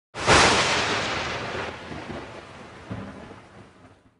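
A thunderclap sound effect for a logo intro: a sudden loud crack about a quarter second in that rumbles on and fades away over the next three seconds.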